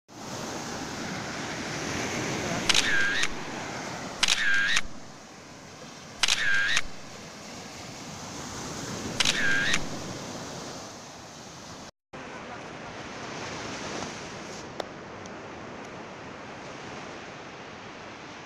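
Surf washing onto a sandy beach: a steady rush of breaking waves. Four short high-pitched ringing tones, each about half a second long, come at intervals in the first half. The sound breaks off for a moment about two-thirds of the way through.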